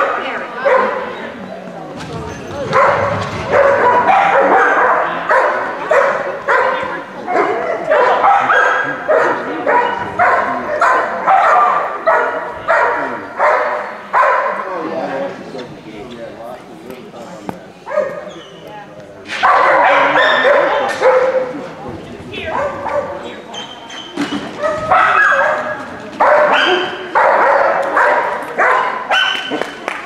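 Dogs barking and yipping over and over in long bouts, with a quieter lull a little past the middle.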